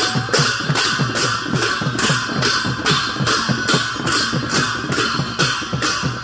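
Newar dhimay drums and large bhusya hand cymbals playing a steady processional rhythm. The cymbals clash about two to three times a second over rapid, repeated drum strokes.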